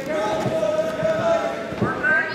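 Shouting voices in a gym: one long held yell from the sidelines of a wrestling match, with a few dull thuds about a second in and again near the end.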